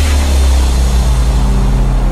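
TV station logo ident sound: a loud whoosh-like hiss over deep, held bass tones, coming just after a sudden hit.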